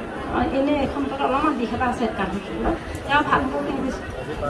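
Speech only: a woman talking into a handheld microphone.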